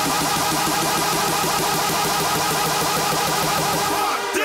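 Electronic dance music build-up played over a festival sound system: a dense, steady hiss-like noise swell over a fast, buzzy repeating synth figure, with no beat breaking through.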